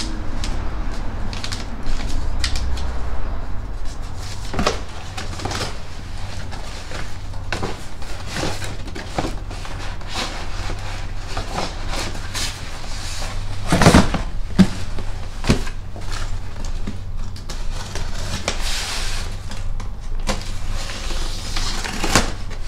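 Cardboard shipping boxes and paper being handled: scattered knocks, rustles and clicks, a louder thump about two-thirds of the way through, and a stretch of rustling near the end as a flap is pulled open, over a low steady hum.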